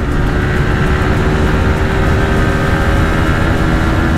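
TVS Apache RTR 160 4V's single-cylinder engine pulling at full throttle near top speed, its note held nearly steady as the bike climbs past 100 km/h. Heavy wind rush is on the mic.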